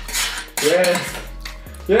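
A metal fork scraping and clinking against a metal baking tray, repeatedly, scooping up the last scraps of spaghetti.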